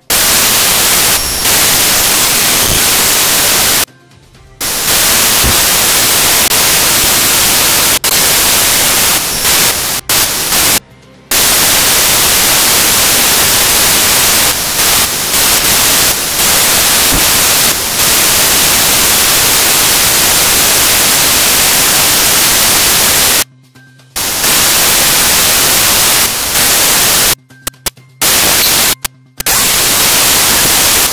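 Loud, steady hiss of static noise spread evenly across all pitches. It cuts out abruptly to near silence for moments about four seconds in, around eleven seconds, and a few times near the end.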